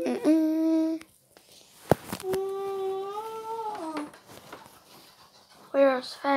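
A child humming two long held notes, the second dipping in pitch at its end, with a single sharp click between them.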